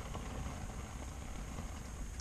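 Quiet, steady low rumble of background noise inside an ice-fishing shelter, with no distinct event standing out.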